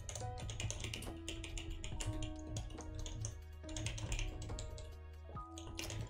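Rapid typing on a computer keyboard, a quick run of key clicks, over steady background music.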